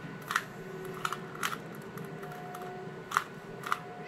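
Plastic Rubik's cube being turned by hand: about five sharp clicks at uneven intervals as its layers snap round.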